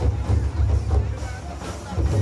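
Deep, steady beating of nagara drums playing dance music, with a crowd's voices over it.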